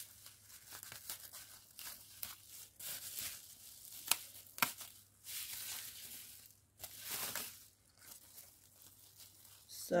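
Plastic bubble wrap crinkling and rustling as it is handled and cut with scissors that struggle to cut it, with two sharp clicks a little past the middle.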